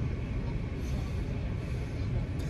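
Steady low rumble of a car heard from inside the cabin, with no other distinct events.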